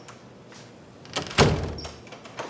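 A wooden door pulled shut: a latch click, then a louder thud about a second and a half in.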